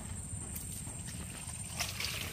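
Shallow muddy water sloshing as a bamboo fish trap is worked loose and lifted out, with a splash and water pouring off the trap near the end.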